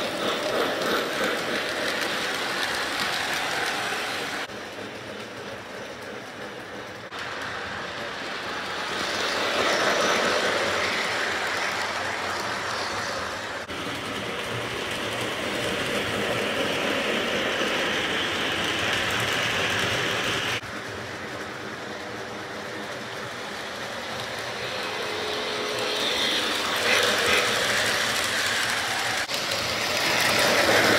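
Lionel model train running around its track: the locomotive's motor whir and the wheels' rumble and clatter on the metal rails. It grows louder and fainter in turns, with a sudden drop about two-thirds of the way through.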